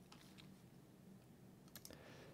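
Near silence: room tone, with a few faint clicks near the end, as from a computer mouse or keys.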